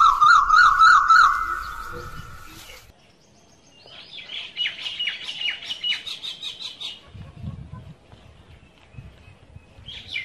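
Bird chirps and song laid over a logo animation. A warbling trill in the first two seconds fades out, then after a short gap comes a run of rapid high chirps from about four to seven seconds in.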